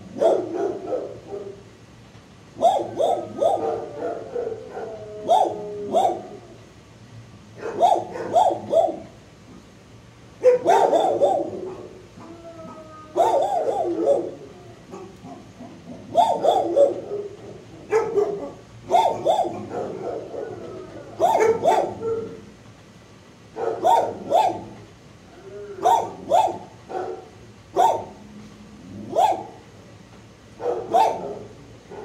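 Dogs barking in a hard-walled shelter kennel, in clusters of two to four barks every two to three seconds without a break.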